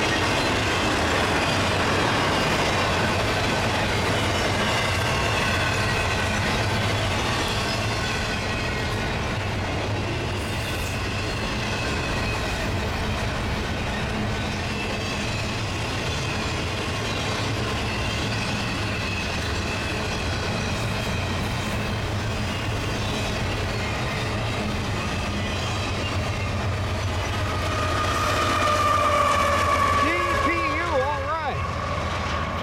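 Freight train cars rolling past on the rails: a steady rumble and clatter of wheels with faint squealing tones from the wheels. Near the end it grows louder as a locomotive draws close.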